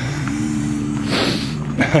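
A low, steady moaning voice held for about a second, with a short hiss partway through, then a laugh right at the end.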